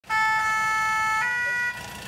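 Two-tone fire-engine siren of the French "pin-pon" kind: one steady low note, then a step up to a higher note, cutting off after about a second and a half.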